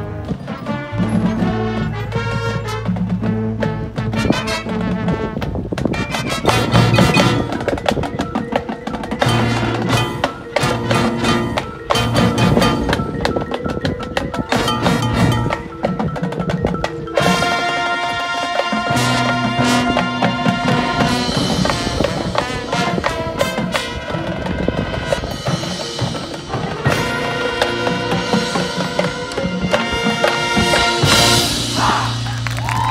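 High school marching band playing its field show: front-ensemble mallet percussion (marimba, glockenspiel) and drums carry a busy rhythmic line over low held tones, and about 17 seconds in, fuller sustained chords join in.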